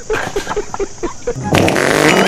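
Wet fart sound effect played for a prank: a sputtering run of quick pops, about eight a second. About a second and a half in, a louder sound with a warbling tone cuts in over it.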